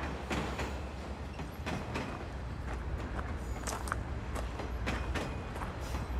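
Scattered knocks and creaks of footsteps and handling in a parked old caboose, over a steady low rumble.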